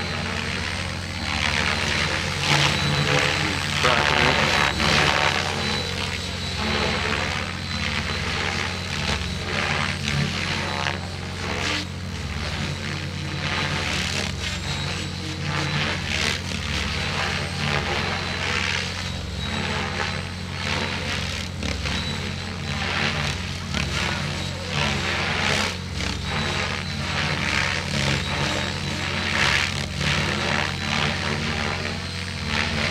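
Radio-controlled helicopter flying aerobatics overhead, its rotor and motor sound surging and easing with the manoeuvres over a steady high whine. Music and voices in the background.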